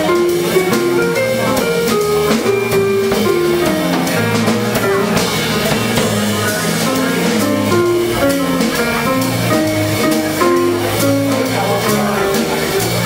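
A small jazz band playing live, an instrumental passage: drum kit keeping time with an electric guitar and a bass line.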